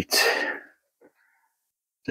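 A man's short, breathy exhale, about half a second long, at the start, fading out; the rest is near silence.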